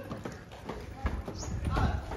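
Footsteps of sneakers on hard tiled steps, a few light taps over a low rumble of walking and handling.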